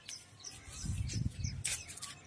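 Small birds chirping faintly in the background, a few short high chirps spread through the moment, with soft low thuds near the middle.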